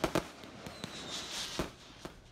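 Aerial fireworks going off: sharp bangs, two close together at the start and another about a second and a half in, with a crackling hiss between them.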